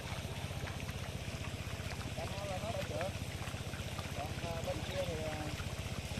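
A small engine running steadily with an even, rapid chug, with faint distant voices over it.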